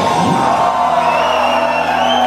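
Heavy metal band's final chord ringing out, the guitar and bass notes held steady, as the crowd cheers and whoops.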